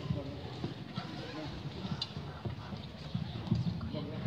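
A hushed pause before a wind band plays: low murmur of voices with scattered irregular knocks and shuffling on a hard floor.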